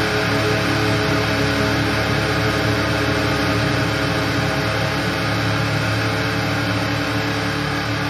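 Distorted electric guitars in a hardcore punk recording hold a sustained, noisy chord with no drum hits, slowly fading toward the end.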